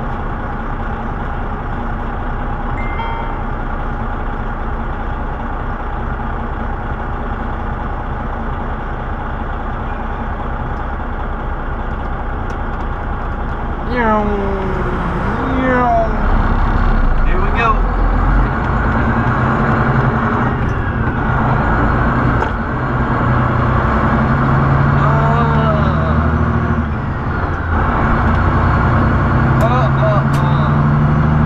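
Diesel engine of a semi truck, heard from inside the cab, running steadily at low speed. About halfway through it gets louder and climbs in pitch several times as the truck pulls away and works up through the gears.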